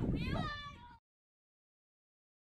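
A high-pitched, meow-like cry that falls in pitch, then the sound cuts off abruptly to silence about a second in.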